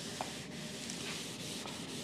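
Chalk scratching on a blackboard as it is written with, a faint steady rubbing with a light tap shortly after the start.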